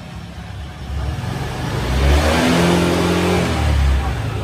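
Honda Vario 150 scooter's single-cylinder engine revving up under open throttle, its rear wheel spinning up through the CVT during a speed test. The engine note rises and grows louder from about a second in and is strongest over the last two seconds.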